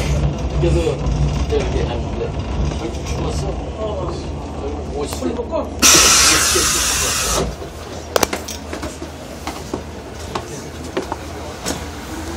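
Diesel commuter railcar slowing into a station: its low running noise fades, a loud burst of compressed-air hiss comes about six seconds in and lasts about a second and a half, then it is quieter with a few sharp clicks. Passenger voices murmur in the background.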